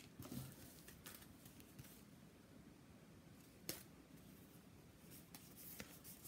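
Mostly near silence, broken by a few brief, faint rustles and taps of handmade paper cards being handled, the clearest about three and a half seconds in.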